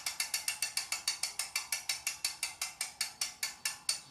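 Rapid, evenly spaced ratchet clicking, about eight clicks a second at a steady rate, stopping abruptly.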